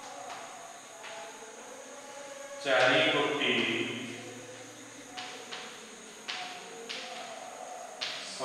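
A man speaking in a lecture in Odia, with the speech pausing and resuming. Between about five and seven seconds in there are a few short taps of chalk on a blackboard as he writes.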